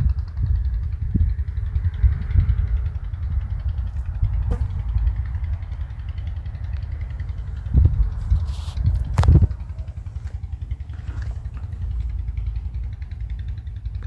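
Low, uneven rumble of travelling along a sandy dirt track: vehicle and wind noise, with a couple of louder knocks about eight and nine seconds in.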